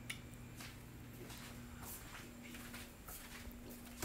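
Faint gulping and swallowing as soda is drunk from a plastic bottle, a few soft sounds scattered over a steady low hum.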